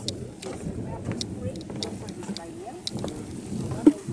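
Indistinct murmur of several people talking at once, low under the microphone, with a few scattered sharp clicks.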